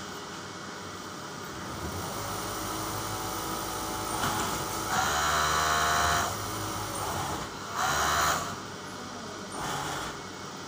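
Industrial overlock sewing machine running in short bursts: a brief run about four seconds in, a longer whirring run of about a second right after, and another short run near eight seconds, over a steady background hum.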